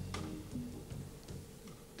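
Brass-led band music coming to an end: a last accented hit just after the start, then the final notes die away into the hall's quiet.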